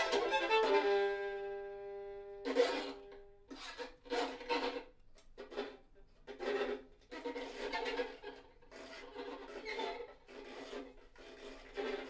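Two violins playing a duet: a held chord dies away about two seconds in, then the players bow a series of short, separate strokes with brief pauses between them.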